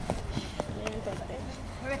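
Faint shouting and voices from players and onlookers across an outdoor football pitch, with a few short sharp knocks; a man's close, loud shout starts right at the end.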